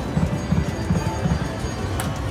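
Prowling Panther video slot machine playing its reel-spin sound, a rhythmic low drumbeat, while the reels spin and stop.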